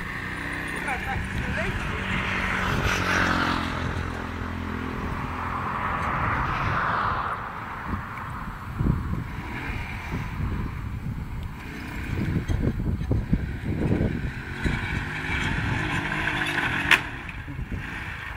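Small motorbike engine revving and labouring as it pulls on a rope tied to a wooden pole, its pitch rising over the first few seconds and then running unevenly. A single sharp snap is heard near the end.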